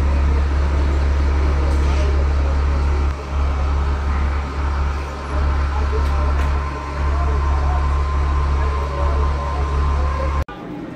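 Diesel coach engine idling nearby: a loud, steady low rumble that dips briefly a few times, with voices in the background.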